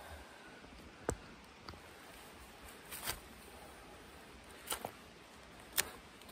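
A few faint, brief scrapes and clicks, spaced a second or so apart: a small knife shaving a wooden stick, mixed with hands handling the camera.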